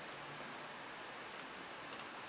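Faint steady hiss of room tone, with one small click near the end.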